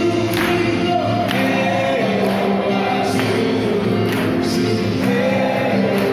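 A group of young men singing a gospel action song together, backed by acoustic guitar and drums, with a steady beat of about one stroke a second.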